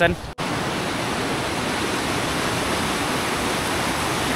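Mountain stream rushing over rocks: a steady, even rush of water.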